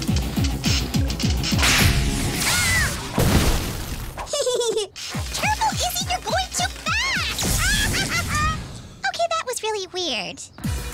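Cartoon soundtrack: background music with an even beat and crash-like sound effects in the first few seconds, then wordless character vocal sounds with sliding pitch over the music.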